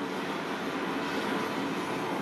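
A steady, dense wash of noise from the movie trailer's sound effects, playing as the picture fades to black.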